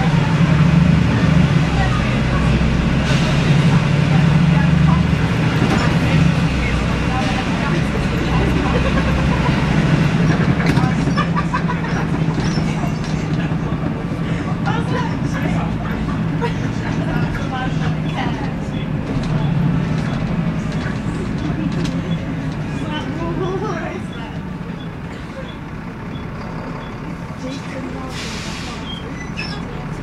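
Volvo D7C diesel engine of a Volvo B7L single-decker bus droning steadily under way, heard from inside the saloon with road rumble beneath it. It eases off about three-quarters of the way through, and a short hiss of air comes near the end.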